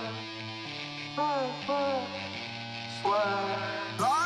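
Intro music: held low chords with short swooping pitched notes about a second in, again near two seconds, and once more at three seconds.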